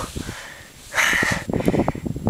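A person breathing hard through the mouth, with a loud breath about a second in, out of breath from climbing at high altitude.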